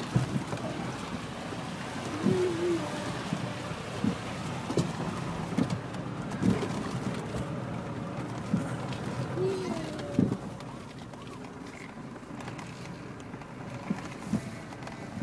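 Off-road 4x4 driving slowly over a rough, rocky dirt track: a steady rumble broken by repeated knocks and jolts from the bumpy ground. Short wavering tones come a couple of seconds in and again near ten seconds.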